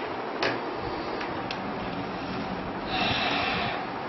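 A few sharp clicks from a laptop's keys and touchpad, then a short breathy snort of laughter about three seconds in, over a steady hiss.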